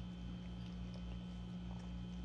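Faint close-up mouth sounds of someone chewing food, a few small clicks and smacks, over a steady low electrical hum.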